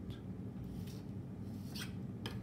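Faint handling noise of drawing tools: two brief light scrapes as a plastic protractor is slid off the paper and a plastic ruler is picked up, over a steady low hum.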